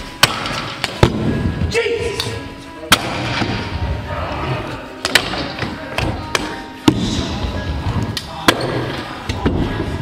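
Stunt scooter rolling and grinding on a metal rail set into wooden skatepark ramps, with sharp cracks of wheels and deck hitting the wood every second or so, echoing around the indoor hall.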